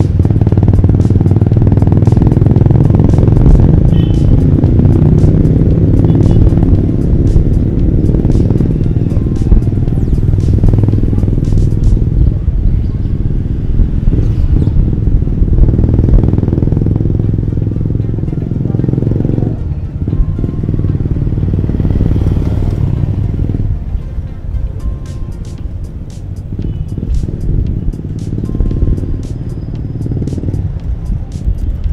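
Motorcycles and motor-tricycles running in busy street traffic, with music playing along. The traffic noise eases off in the second half.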